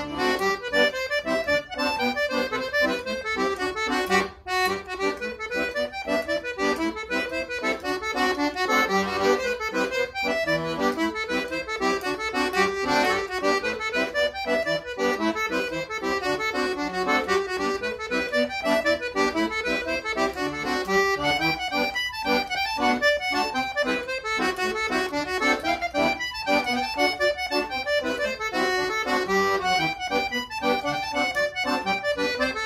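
Solo piano accordion playing a lively jig, a steady run of quick notes over chords, with a brief break in the sound about four seconds in.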